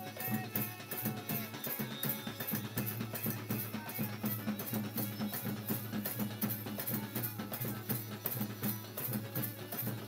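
Bengali Sufi devotional (Maizbhandari sama) music: dhol drums and tabla beat a fast, even rhythm over sustained harmonium tones, with little singing in this stretch.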